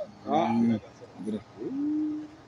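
A man's voice preaching in short phrases with pauses. Near the end he draws one syllable out into a long, level held note.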